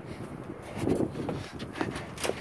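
A few soft footsteps scuffing on concrete as a person walks, faint knocks about a second in and again near the end.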